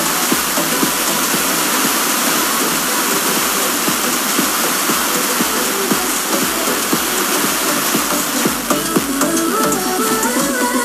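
Demodulated audio from a weak, fading long-distance FM broadcast: a loud, steady hiss with crackle, and the station's music barely coming through underneath. The music comes back more clearly near the end as the signal picks up.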